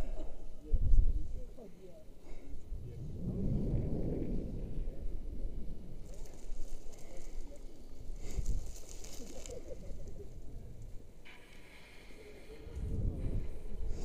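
Wind rushing over a body-worn camera's microphone in repeated swells as a rope jumper swings back and forth on the rope after the jump, loudest each time the swing passes through its lowest point.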